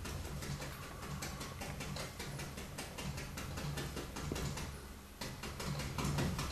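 Paintbrush tapping black paint onto a canvas in quick, light dabs, several taps a second, to stipple dark foliage into green.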